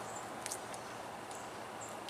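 A bite into a crisp, juicy star fruit slice, one short crunch about half a second in, then quiet chewing. A few short, high chirps sound faintly over a low, steady outdoor background.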